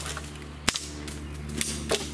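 Sharp cracks of a hornbeam trunk breaking as the sawn-through tree falls: one loud snap about two-thirds of a second in and another near the end.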